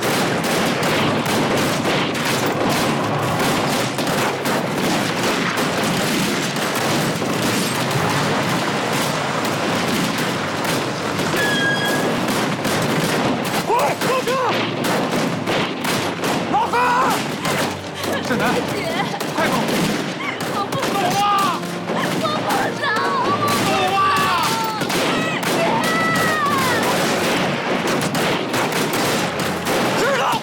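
Heavy small-arms gunfire, rifle and machine-gun shots overlapping without a break. Men shout over it from about halfway through.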